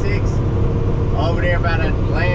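Steady low rumble of a semi-truck's engine and road noise, heard inside the cab at highway speed, with a voice talking over it from about a second in.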